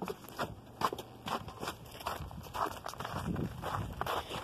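Footsteps of people walking, irregular crunchy steps, with rustling from the handheld phone.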